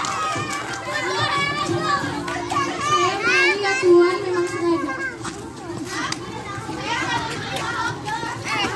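A crowd of children's voices all at once, chattering and calling out, with high rising squeals among them.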